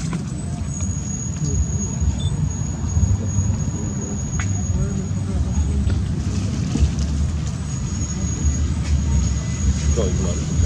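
Steady low outdoor rumble, with a thin high steady tone that drops out for a couple of seconds in the middle.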